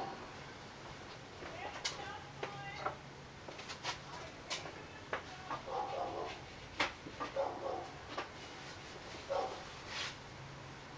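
Scattered light clicks and taps of small hand tools being picked up and handled, at irregular intervals, with a few short, faint whines between them in the second half.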